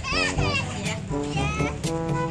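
A toddler crying in loud wails, in protest at being taken away from the ride, over a children's song playing from an odong-odong kiddie ride's loudspeaker.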